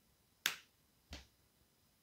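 Two crisp snaps of a small paper playing card being laid down on a spread of cards, about half a second in and again just after a second, the first louder.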